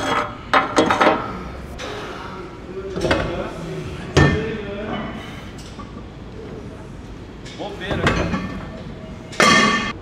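Metal clanks and knocks from a plate-loaded gym machine being set up and loaded with weight plates: several separate impacts, the sharpest about four seconds in and a louder, ringing clank near the end.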